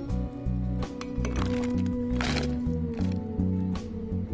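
Background music with a bass line changing notes several times a second under held higher notes.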